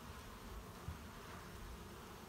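Honeybees buzzing faintly and steadily around a hive entrance where a newly hived swarm is settling in.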